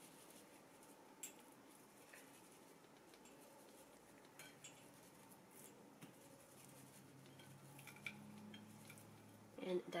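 Near silence, broken by a few faint clicks and light rattles of a spice shaker being shaken and hands handling raw fish fillets on a ceramic plate. A faint low hum comes in for the last few seconds.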